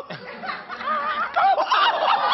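A woman's startled shriek and laughter, high and wavering, growing louder in the second half.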